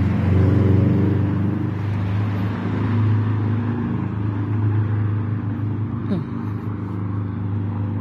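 Car engine running nearby: a steady low hum, with a rush of traffic noise loudest in the first second or so.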